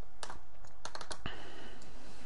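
Sharp clicks of a computer mouse and keyboard: one about a quarter second in, then a quick run of four or five around the one-second mark.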